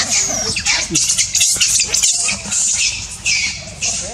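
Macaque screaming: a rapid run of about ten high-pitched, rasping screams with short breaks between them.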